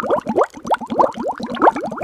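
A rapid, loud run of bubbling, blooping sounds: many short rising chirps, about eight a second, like water bubbling.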